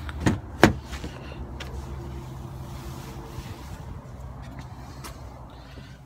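Ford Explorer car door being worked: two sharp knocks in the first second, the second one the loudest, as a door shuts or its latch catches. A steady low rumble runs underneath.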